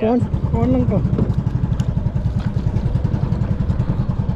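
Small boat engine running steadily, a fast low throb of about ten beats a second.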